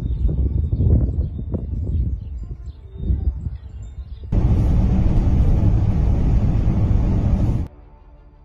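Strong wind buffeting the camera microphone in front of an advancing dust storm: a gusty low rumble with scattered blasts, then, about four seconds in, a louder, steady rush of wind noise that cuts off suddenly shortly before the end.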